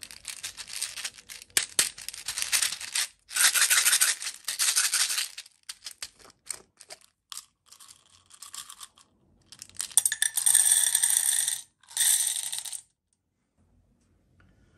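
Plastic beads rattling in a small plastic bottle as it is shaken, in two bursts. Then a few clicks as the bottle is opened, and the beads are poured into a metal muffin tin, pattering with a ringing metallic tone before cutting off suddenly near the end.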